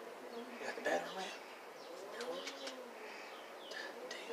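Quiet outdoor ambience with birds: a dove cooing, one soft rise-and-fall call about two seconds in, and a few faint chirps.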